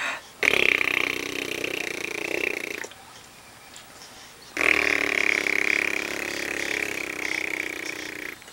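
An adult blowing raspberries, lips buzzing loudly in two long blows: the first starts about half a second in and lasts about two and a half seconds, the second starts about four and a half seconds in and runs about three and a half seconds.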